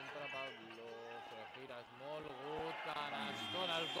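A man's voice commentating over a basketball game, with game sounds underneath and a short high-pitched squeak near the end.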